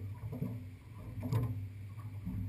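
Low steady hum of the boat's idling outboard motor, with a few small knocks and one sharp knock about a second and a half in as the landing net is brought aboard the aluminium boat.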